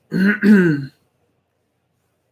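A man clearing his throat: two quick voiced rasps in under a second, the second falling in pitch.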